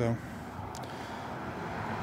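A spoken word ending at the very start, then a pause filled only by steady outdoor background noise that swells slightly near the end.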